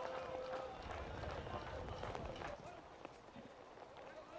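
Faint pitch-side sound of a football match in play: distant players' shouts over a low open-air background, with a few light thuds.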